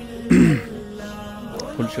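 Background music playing steadily, with a short, loud throat clearing that falls in pitch about a third of a second in.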